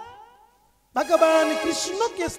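A man's amplified voice: a held note fades away, a short silence, then his voice starts again abruptly about a second in.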